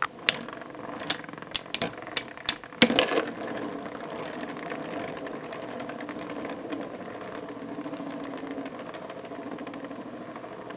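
Two Beyblade spinning tops, a Metal Fusion Dark Bull and a G-Revolution Wolborg MS, battling in a plastic stadium: a quick run of sharp clacks as they collide over the first three seconds, then a steady whir as they spin on the stadium floor.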